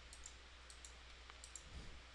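Several faint computer-mouse clicks over near-silent room tone, as keys are clicked on an on-screen TI-84 calculator.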